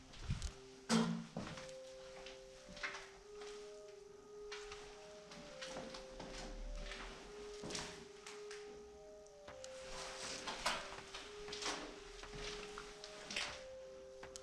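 Soft background music of slow, sustained notes, over irregular knocks, clicks and footsteps as old wooden doors and cupboards are handled in an empty room. The loudest knock comes about a second in.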